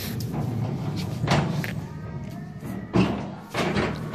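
Steel flatbed shopping cart rattling and knocking as it is pushed over a concrete floor, with a few sharp thumps from its frame, the loudest about three seconds in. Store music plays faintly underneath.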